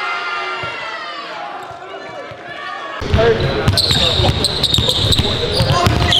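Basketball being dribbled on a gym floor, with voices in the hall around it. About halfway through, the sound jumps to a louder, closer mix with quick sharp ball bounces.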